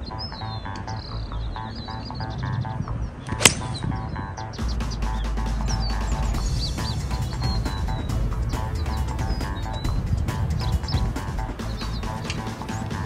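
Background music with a steady beat, with one sharp crack about three and a half seconds in: a five-iron striking a golf ball from the fairway.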